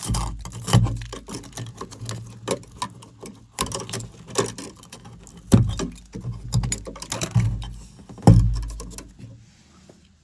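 Hands working electrical wires with a wire stripper at a plastic outlet box. The wires and tool make irregular clicks, knocks and rustles, with a few heavier thumps, and the sound dies away near the end.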